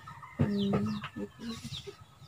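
Chicken clucking: a low held note about half a second in, then a few short clucks, with faint high falling chirps alongside.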